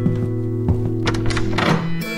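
Background music holding steady notes, with a few dull knocks on a door about a second in.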